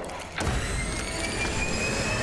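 A science-fiction machine sound effect powering up. It starts suddenly about half a second in and then hums with a high electronic whine that slowly rises in pitch.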